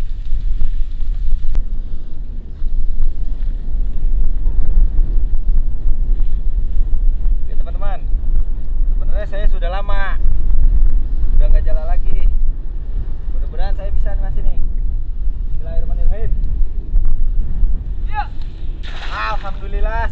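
Wind rumbling steadily on the microphone, with short bursts of voices calling out now and then from about eight seconds in.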